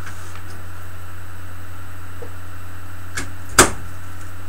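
A steady low hum throughout, with a light knock about three seconds in and a sharp, louder knock about half a second later.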